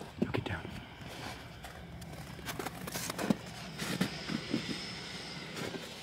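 Faint, steady low hum of a semi truck's diesel engine running as the truck pulls in and approaches, with scattered clicks and rustles close by.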